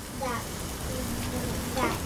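Chicken breasts and sliced zucchini and bell peppers sizzling on a gas grill, a steady even hiss.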